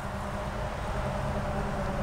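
Steady low rumble with a faint constant hum: an unidentified outdoor background noise.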